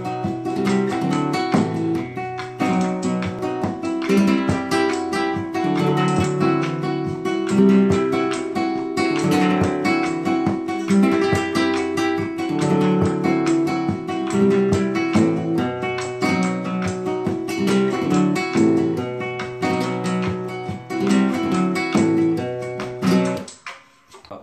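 Flamenco guitar played with rasgueado strums in a tangos rhythm, dense rolled strokes over chords with a strong bass, fading out near the end.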